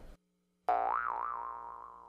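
Comic 'boing' sound effect: after a brief silence, a twangy pitched tone comes in about two-thirds of a second in, rises with a wobble, then settles and fades away.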